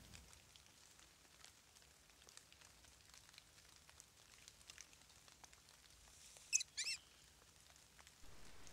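Faint scattered ticks of light rain pattering on dry leaf litter in quiet woods, with two short, high chirps from a bird about six and a half seconds in.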